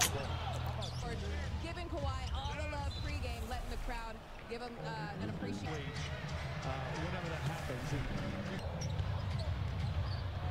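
NBA game broadcast playing at low level: announcers' commentary over arena crowd noise, with a basketball bouncing on the hardwood court.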